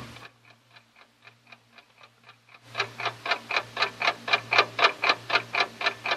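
A clock ticking fast and evenly, about five ticks a second, as a radio-drama sound effect. The ticks are faint at first and grow much louder about halfway through, over a low steady hum.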